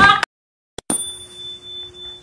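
A bright ding chime sound effect strikes about a second in and rings on as a single steady tone, slowly fading. A short burst of laughter ends just before it, followed by a moment of silence and a faint click.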